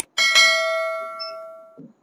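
A bell-chime notification sound effect, added to an on-screen subscribe-button animation. It is struck twice in quick succession a little way in, and its ringing tones die away over about a second and a half.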